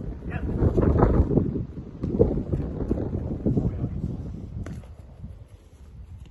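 Wind buffeting the microphone, a low rumble that is loudest in the first couple of seconds and eases toward the end. A single short knock cuts through it near the end.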